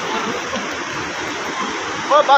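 Fast mountain river rushing over boulders in white-water rapids, a steady rushing noise.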